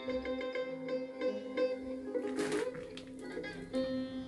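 Azerbaijani music playing from the speaker of a small old Yu-Ma-Tu portable radio cassette player: a steady instrumental passage with held notes.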